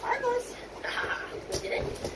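Doberman puppy giving a short, high-pitched whine near the start, followed by softer sounds.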